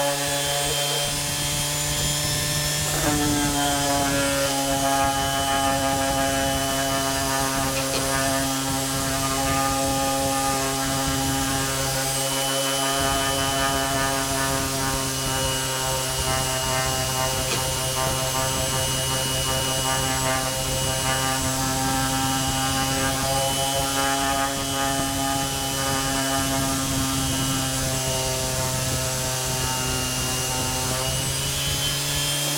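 Electric random orbital sander running steadily with its round pad rubbing on a wooden surface: an even motor whine over a rasping hiss. The pitch shifts slightly about three seconds in.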